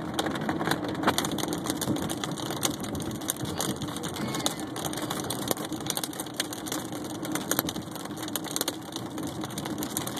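Hailstones hitting a car's roof and windshield as a dense, irregular clatter of small impacts, heard from inside the moving car over its steady engine and road noise.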